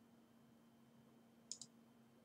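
Near silence with a faint steady hum, broken about a second and a half in by two quick clicks of a computer mouse.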